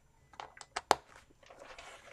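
A planner binder being handled, with its hanging keychain charms being put right: a few light clicks, the sharpest about a second in, then a soft rustle as the binder is turned.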